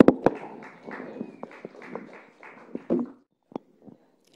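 Handheld microphone being handled as it changes hands: two sharp clicks right at the start, then rustling and shuffling over room noise, with a couple of faint clicks near the end.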